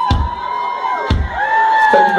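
Live rock band's drum kit striking two heavy accented hits about a second apart, kick drum with cymbals, while the crowd shouts and cheers.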